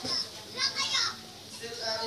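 Children's voices talking and playing in the background, with short high chirps recurring.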